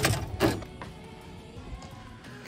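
A single short knock about half a second in, then a faint steady background.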